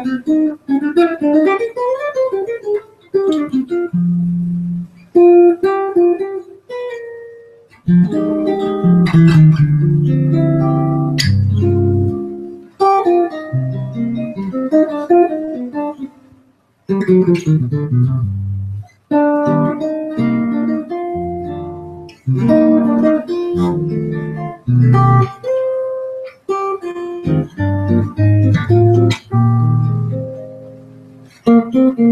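Solo jazz guitar on a hollow-body archtop: chords with a melody line moving over them, played in phrases with short pauses between.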